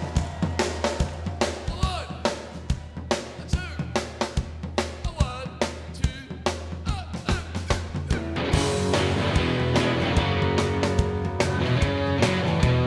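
Live rock band opening a song: the drum kit plays a steady beat, with some sliding notes over it. About eight and a half seconds in, the full band with electric guitars and bass comes in.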